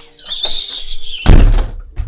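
A door swung shut hard: a rushing swish for about a second, then a heavy slam about a second and a quarter in. Soft background music runs underneath.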